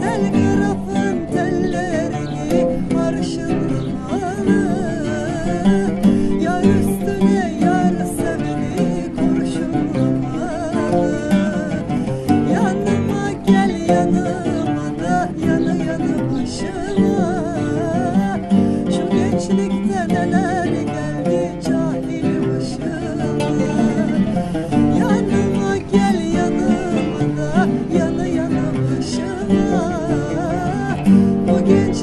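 A woman singing a song to the accompaniment of a plucked oud and an acoustic guitar.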